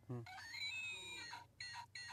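Electronic animal cry from a sound-making plush toy fawn: one faint, reedy call of about a second, its pitch rising and falling, followed by a couple of short chirps.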